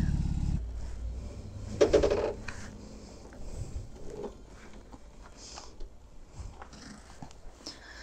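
A BMW touring motorcycle's engine idles for the first half-second and then cuts out. Quiet clicks and knocks follow as the bike is parked, with a short voiced sound about two seconds in.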